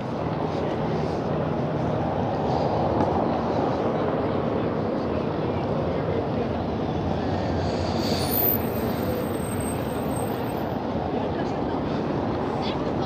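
Steady city street noise of passing traffic, with a brief thin high-pitched squeal about eight seconds in.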